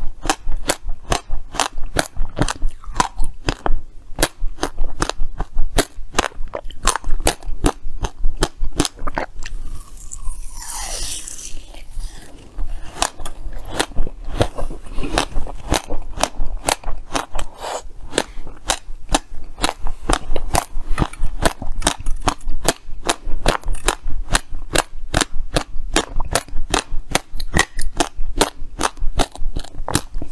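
Frozen ice being bitten and chewed close to the microphone: a dense run of sharp, crisp cracks and crunches, several a second, with a brief hiss about ten seconds in.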